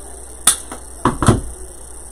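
A sharp snip about half a second in, then two or three short knocks around a second in: hand cutters cutting artificial greenery stems and the pieces being handled on a tabletop.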